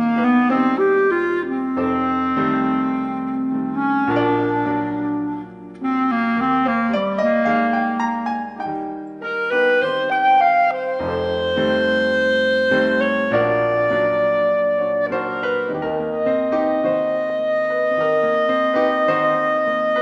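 A clarinet and a grand piano play an instrumental duet, the clarinet holding long melody notes over the piano's chords.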